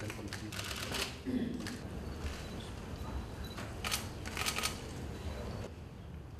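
Camera shutters clicking in quick bursts, once about half a second in and again around four seconds in, over low room noise.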